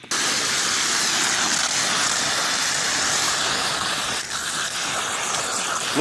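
Wind and heavy rain rushing steadily over a flat roof, starting abruptly and staying loud, around a flooded roof drain clogged with debris.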